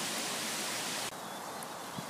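Steady rushing of wind outdoors, the breeze moving through tree branches. About a second in the noise drops abruptly to a quieter hiss.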